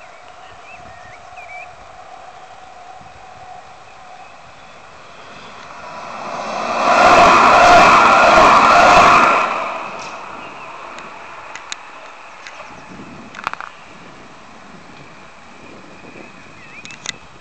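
Luas light-rail tram passing close by: its running noise swells over a few seconds, stays loud for about three seconds, then fades away.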